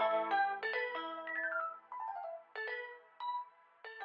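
Hip-hop instrumental beat with the drums dropped out, leaving a lone synth melody of short, pitched, bell-like notes. A few of the notes slide down in pitch around the middle.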